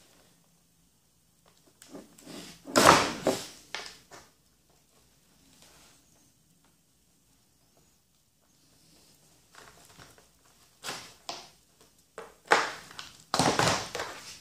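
Scattered knocks and clatter from hands working the model plane's speed-controller wiring and connectors to unplug the Hobby King 60 A controller. There is a loud cluster of knocks about three seconds in and another run of knocks in the last couple of seconds, with quiet stretches between.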